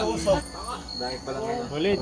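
A cricket trilling steadily at a single high pitch, heard under men's voices talking.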